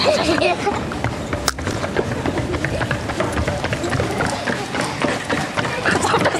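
A busy mix of voices and music, with a sharp click about one and a half seconds in.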